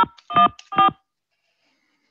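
Three touch-tone (DTMF) keypad beeps about 0.4 s apart, from the Google Voice dialpad, keying digits in answer to an automated phone menu's prompt for a booking time.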